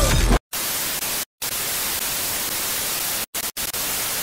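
Television static: a steady white-noise hiss, the sound of a dead channel over colour bars. It cuts in abruptly after a loud low rumble about half a second in and drops out to silence several times for a split second.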